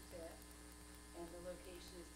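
Steady electrical mains hum on the sound system, with faint, distant speech.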